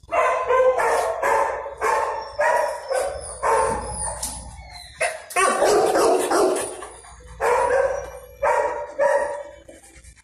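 A dog barking repeatedly, about ten loud barks in short bursts, with one longer, drawn-out bark around the middle.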